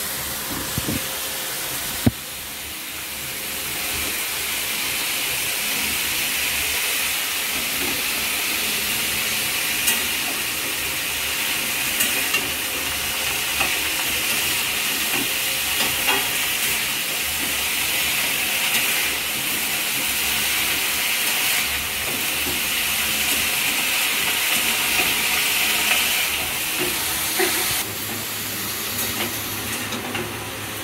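Chopped cabbage sizzling in hot oil in a steel kadai as it is stirred. It is a steady hiss that swells a few seconds in and drops off near the end, with occasional sharp clicks of the spatula against the pan.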